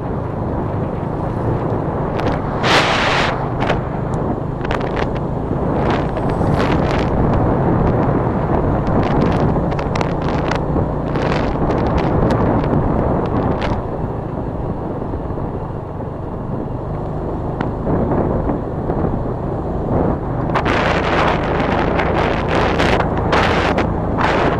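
Motorcycle engine running steadily while riding, almost buried under wind rushing over the microphone, with sharper gusts of wind buffeting about three seconds in, several more in the middle, and a cluster near the end.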